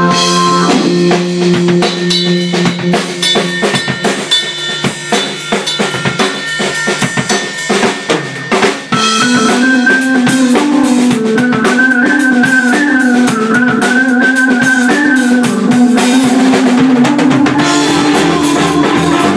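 Rock band playing live in a small room: a Yamaha drum kit carries the first half almost alone, a run of snare, tom and cymbal hits, then keyboard and electric guitar come back in over the drums about nine seconds in.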